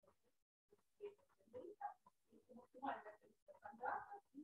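A faint voice talking, picked up well away from the microphone, starting about a second in.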